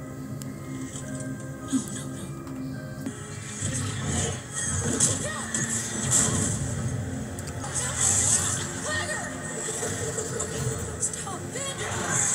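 A TV episode's soundtrack: dramatic score with held, sustained notes, joined about three and a half seconds in by a fuller, louder mix with voices from the episode's dialogue.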